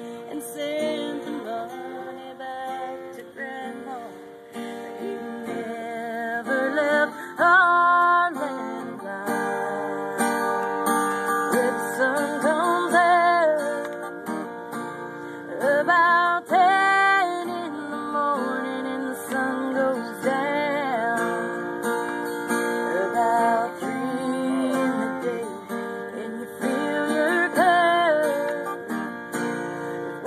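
Acoustic guitar strummed and picked, with a voice singing a slow song over it, the sung notes wavering in vibrato.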